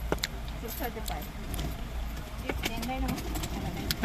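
Soft chewing and small wet mouth clicks of a person eating ripe marang fruit, over a steady low hum, with a faint voice briefly near one second and again about three seconds in.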